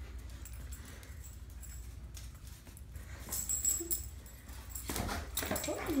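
An adult golden retriever and a golden retriever puppy playing on a tile floor: scattered scuffling and clicking, busier in the second half, with a brief dog whimper.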